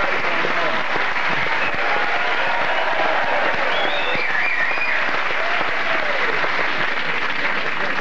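Studio audience applauding steadily, with faint voices calling out over the clapping.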